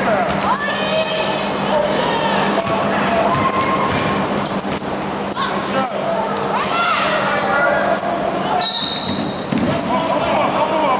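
Basketball game on a hardwood gym floor: the ball bouncing and sneakers squeaking in short high chirps, with players' and spectators' voices calling out.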